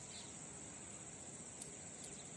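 Faint, steady high-pitched trill of insects, as of crickets, over low outdoor background noise.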